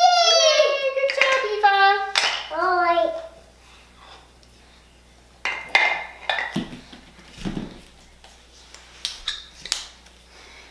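A toddler's high-pitched wordless babbling and squealing, gliding down in pitch, for about the first three seconds, then a few light knocks and rustles of toys being handled.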